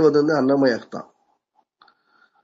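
A man speaking Tamil for about the first second, then near silence with a few faint clicks near the end.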